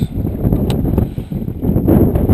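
Wind buffeting the microphone out on open water, with one short, sharp click about two-thirds of a second in.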